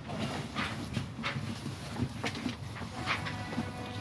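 Soft, irregular footsteps on grass with light rustling of foliage, roughly one step a second.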